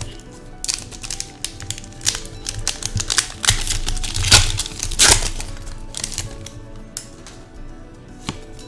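Foil wrapper of a Pokémon trading-card booster pack crinkling and tearing as it is opened: a dense run of crackles, thickest about four to five seconds in, that thins out after about six seconds. Soft background music plays underneath.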